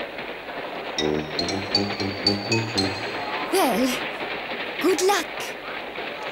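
Cartoon soundtrack music with a pulsing rhythm, and brief wordless vocal sounds from the characters about three and a half seconds in and again about five seconds in.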